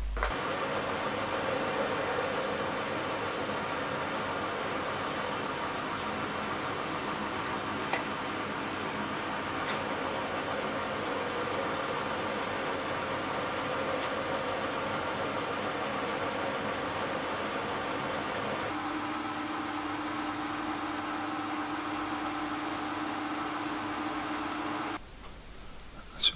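Small metal lathe running steadily while turning a slender metal rod down to make a slide valve spindle. About two-thirds of the way through, the running note changes to a steadier hum with a high whine, and the lathe stops shortly before the end.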